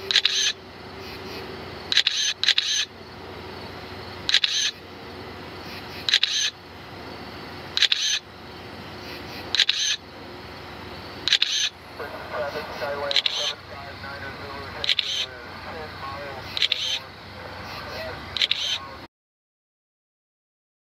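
DJI M300 RTK remote controller sounding its alert: short high-pitched beeps, often in pairs, repeating about every two seconds. It is warning that other aircraft are in the airspace. The sound cuts off abruptly near the end.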